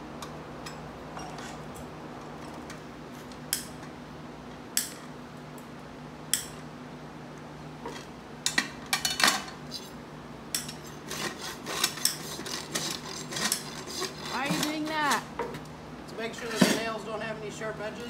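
Farrier's steel hand tools working on a freshly shod horse hoof while the nails are clinched and rasped flush: a few separate sharp metallic clicks, then from about halfway a busy run of clinking and scraping of metal on hoof and nail.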